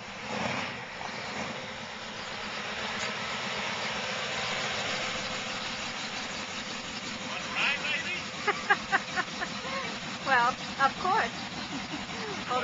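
1964 Chevy pickup's engine running steadily as the truck rolls up close, growing a little louder over the first few seconds. Voices come in over it in the second half.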